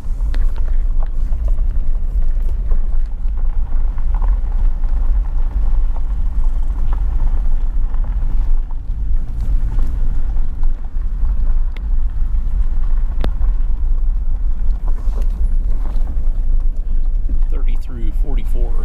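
A vehicle driving slowly on a gravel road, heard from inside: a steady low rumble of engine and tyres, with a few sharp ticks in the second half.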